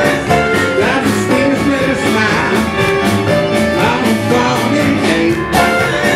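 Live band music led on electric keyboard, with a steady beat.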